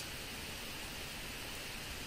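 Steady, even background hiss with nothing else in it: the microphone's noise floor and room tone during a pause in the narration.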